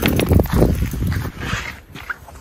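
Footsteps crunching on frost-covered, frozen ground, with a low rumble of wind or handling on the microphone. The sound fades in the second half.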